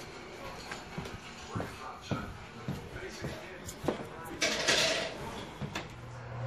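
Footsteps and scattered light knocks of someone walking with the camera, with a short rustling hiss about four and a half seconds in, under a faint voice.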